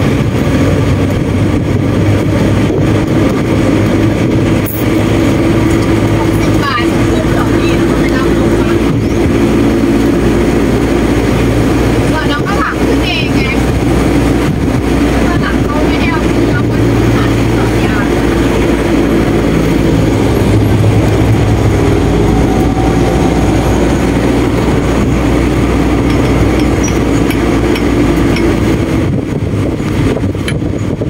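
Converted pickup truck's engine running steadily, with road and wind noise, heard from the open rear passenger bed; the engine note shifts slightly as it takes the curves.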